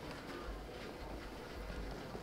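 Faint outdoor background noise with a low rumble.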